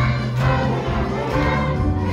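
Live band with strings, guitars, electric bass, keyboard and brass playing a song, with a group of voices singing along.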